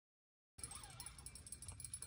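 Near silence at first, then faint low background rumble and hiss from about half a second in.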